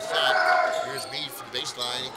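A basketball dribbling on a gym floor, with players and spectators shouting over it.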